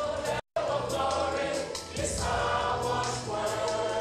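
A choir singing together, with held, sustained notes. The sound cuts out completely for a split second about half a second in, then the singing resumes.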